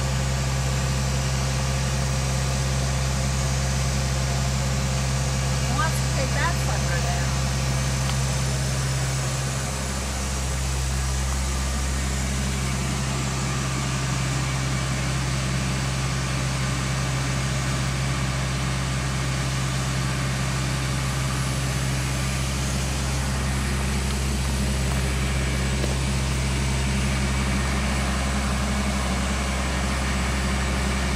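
A work truck's engine idling, a steady low hum that does not change.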